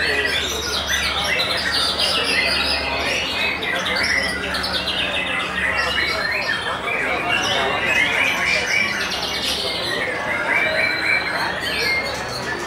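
Several white-rumped shamas (murai batu) singing at once, a dense, continuous tangle of overlapping whistles, trills and harsh chattering calls.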